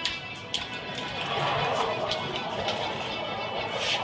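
Background music with soft crinkling and rustling of foil being peeled off the neck of a sparkling wine bottle, strongest about a second in.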